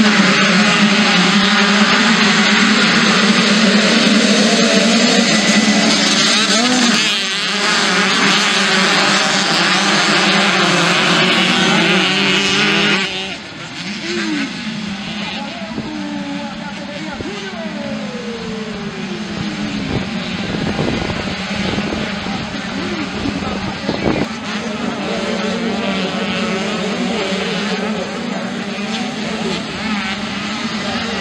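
A pack of two-stroke dirt bikes revving hard together at a race start. About thirteen seconds in the sound suddenly gets quieter, and single bikes are heard rising and falling in pitch as they accelerate and shift around the track.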